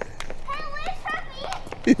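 A young child's high-pitched voice calling out while running, over quick running footsteps on pavement. A man says "hey" and laughs near the end.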